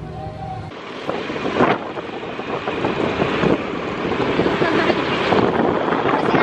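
Wind buffeting the microphone of a camera held by a rider on a moving motor scooter, a loud rushing noise that cuts in under a second in and carries on steadily, with the scooter's road noise mixed in.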